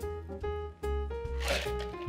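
Background music with held, steady notes; no speech.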